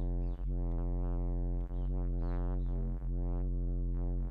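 Deep distorted synth bass note from the MPC Fabric synth, played and replayed about every 1.3 seconds, each note held steady. Its gritty upper tones shift as the distortion effect's width control is turned down.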